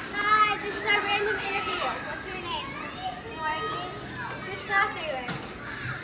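Several children's voices at once, talking and calling out over each other in overlapping chatter.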